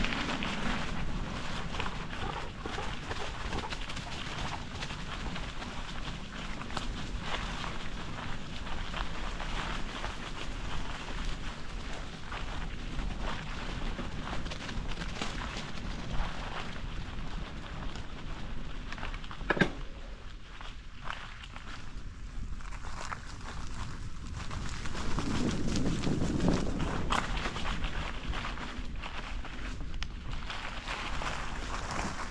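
Bicycle tyres rolling over dry fallen leaves on a dirt trail, a continuous crackling rustle with a low rumble underneath. A single sharp click sounds about two-thirds of the way through.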